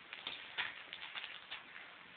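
A dog sniffing and snuffling in a run of short, quick puffs, about a dozen in two seconds.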